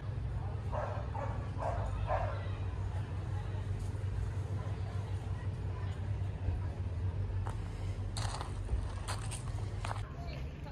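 Outdoor ambience: a steady low rumble, faint distant voices in the first couple of seconds, and a few short crunching steps on a gravel path near the end.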